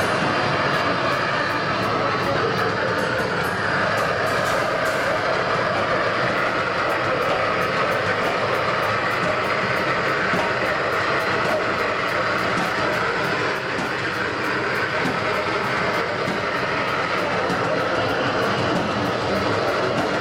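Live two-piece band, a heavily distorted electric guitar and a drum kit, playing as one loud, dense wall of noise with a steady drum beat running through it.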